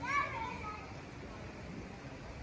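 A child's short high-pitched shout or call right at the start, rising then falling in pitch, over low background noise.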